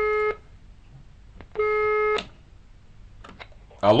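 Telephone line tone on a call-in line: a steady, buzzy beep that stops just after the start and sounds once more for about half a second around two seconds in. Near the end the call connects and a man answers "Hello?".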